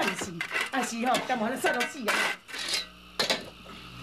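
A shovel digging into the ground, its blade giving several sharp metallic clinks and scrapes under a man's speech, with a low steady hum in the last second or so.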